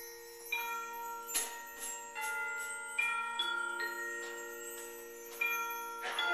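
Middle-school concert band playing a soft passage: held wind chords with struck bell-like notes ringing over them every second or so.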